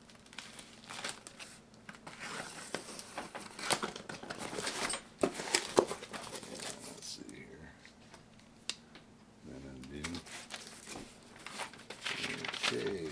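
Packing tape being torn and a cardboard box's flaps pulled open, with crinkling of the tape and cardboard and a few sharp rips about five to six seconds in.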